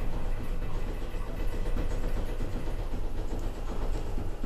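MacGregor Navire traction scenic lift, modernized by Liftcom, travelling between floors: a steady low rumble of the car in motion.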